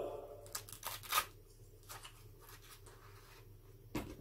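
A doll's baby shoes being pulled off. There is a cluster of quick, sharp handling sounds in the first second or so, then quieter fumbling and a single click near the end.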